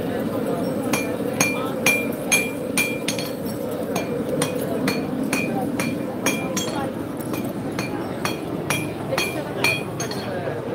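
Blacksmith's hammer striking metal on an anvil, about two ringing blows a second, the loudest in the first few seconds, over the chatter of a crowd.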